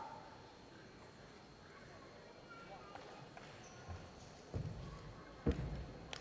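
Dull thuds of a wushu athlete's feet and body striking the padded competition carpet: a few soft thumps about four and a half seconds in and a sharper one near the end, with quiet hall ambience between.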